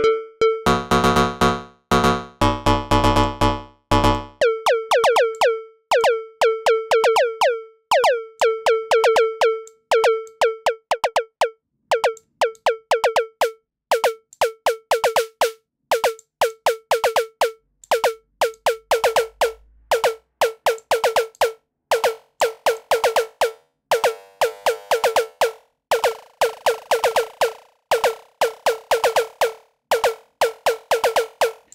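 Synthesized rim-shot voice of Hammerhead Rhythm Station's drum synth, triggered over and over in quick, uneven runs: a short pitched click with ringing overtones, its tone shifting as the noise and resonator settings are changed. From about half a second to four seconds in, a fuller, noisier drum sound plays with it.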